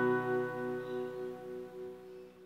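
Acoustic guitar and digital piano letting the song's final chord ring, the sustained notes slowly dying away.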